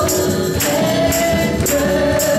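Gospel trio of two men and a woman singing together into microphones, holding long notes over musical accompaniment with a steady beat about twice a second. The held note shifts pitch about three-quarters of a second in.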